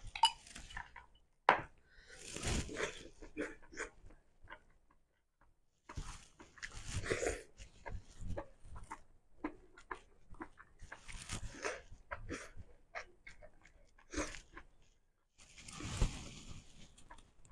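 Close-miked eating sounds: a sip from a glass, then chewing and mouth smacks in irregular bursts with sharp clicks, pausing for about a second and a half near the middle.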